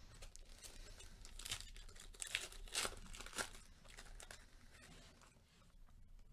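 Plastic wrapper of a Panini Elite football card pack being torn open and crinkled by hand. There are a few sharp rips between about one and a half and three and a half seconds in, with softer rustling around them.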